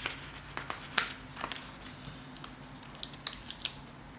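Paper sticker sheet being handled on a desk: scattered light crinkles and small clicks, one sharper click about a second in and a quick run of ticks near the end.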